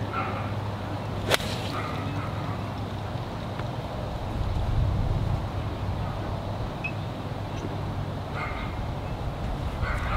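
A golf ball struck off the fairway with a pitching wedge: one sharp, crisp click about a second in, over a steady low outdoor rumble.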